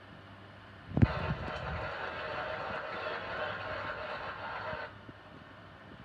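Television speaker during a cable channel change: a sudden pop about a second in, then about four seconds of steady hiss that cuts off suddenly.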